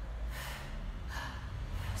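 A woman demonstrating chest breathing: about three short, audible breaths in and out.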